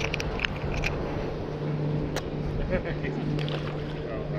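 A steady low engine hum, with scattered small clicks and rustles of handling close to the microphone.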